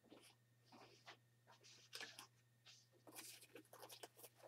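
Near silence: faint, scattered scratching and rustling from hands handling a sketchbook page and small art-supply bottles, over a steady low hum.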